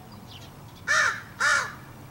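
A crow cawing twice, two loud harsh calls about half a second apart near the middle.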